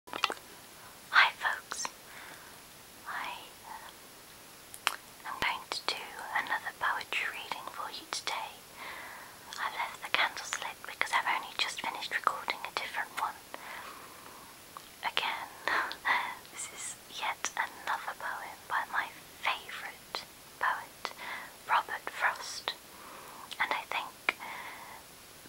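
A woman speaking in a whisper.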